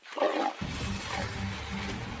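A lion snarls once, loudly and briefly, near the start, then background music with a regular pulse comes back in.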